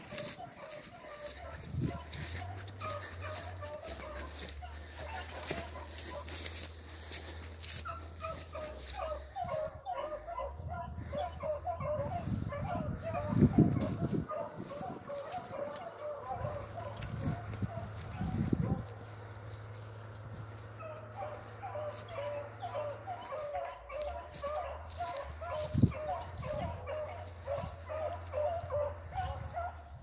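A pack of beagles baying on a rabbit's track at a distance: a steady run of short yelping calls, running the line. Dry brush crackles close by.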